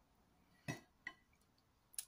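Three faint, short clinks of kitchenware, about two-thirds of a second in, at one second and near the end, over near silence.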